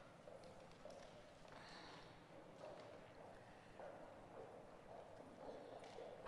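Near silence: faint footsteps on a hard floor, with a faint murmur of voices.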